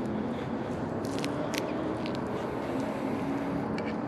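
Steady hum of a distant engine with a faint, slowly drifting tone. A few small clicks and rustles from wet weeds being pulled by hand come through over it.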